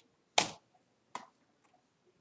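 Two sharp clicks from the computer's input keys or buttons: a louder one about half a second in and a lighter one a little after a second.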